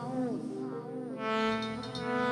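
A shaabi wedding band's electronic keyboard plays a melody line of bending notes between sung phrases, then holds one long note from a little over a second in.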